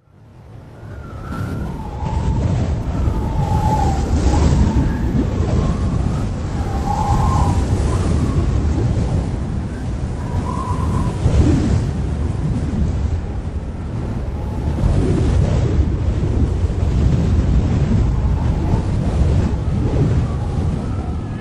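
A low, rumbling wash of noise like wind or surf, fading in from silence over the first two seconds and then holding steady and loud, with faint brief tones showing through it now and then.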